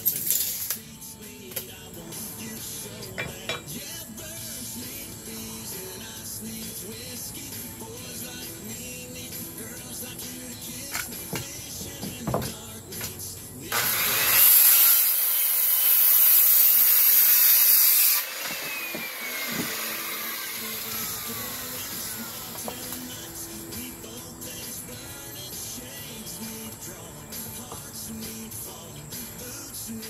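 Circular saw spinning up and cutting through a wooden deck board for about four seconds, about halfway through, then its whine falls away as the blade winds down. Music plays in the background throughout.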